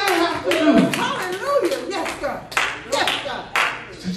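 Congregation handclapping at uneven intervals over raised voices calling out.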